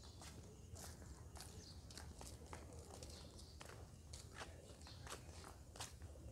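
Faint footsteps on concrete paving, about two steps a second, over a low steady rumble.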